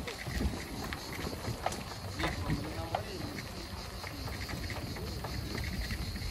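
Bicycle rolling along a paved path: wind on the microphone and a low rumble, with scattered rattles and clicks from the bike over the paving stones.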